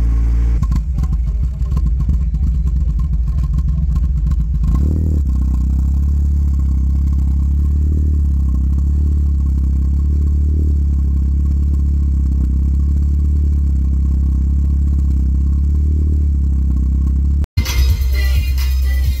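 VW Citi Golf engine idling steadily through its twin-tip exhaust, a deep even drone, with some clattering over it in the first few seconds. The sound cuts out briefly near the end.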